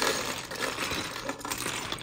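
Loose Lego minifigure parts pouring out of a clear plastic jar and clattering onto a heap of parts on a Lego baseplate: a dense, continuous run of small plastic clicks.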